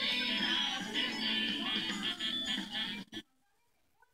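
Children's TV channel ident jingle played back through a tablet's small speaker. It cuts off suddenly about three seconds in, with a click, as the playback is paused.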